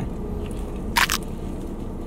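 A single short crunch about a second in, a bite into a doughnut topped with Fruity Pebbles cereal, over a steady low hum.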